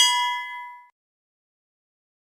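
A single bell-like notification ding, struck right at the start and ringing out with several tones that fade away within about a second. This is the bell sound effect of an animated subscribe-button overlay.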